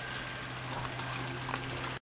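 Steady low hum of the waste-motor-oil distiller's electric feed pump running, over a faint even hiss.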